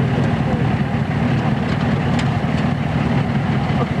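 An engine running steadily at idle, a continuous low drone, with a few light clicks from hand tools working on a car's front end.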